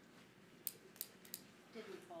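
Three quick, sharp clicks about a third of a second apart over quiet room tone, followed near the end by a faint voice.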